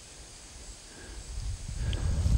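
Faint outdoor ambience at the water's edge, with a low rumble rising near the end.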